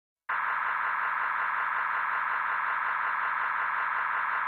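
Steady static-like hiss, unchanging in level and pitch, starting about a quarter second in.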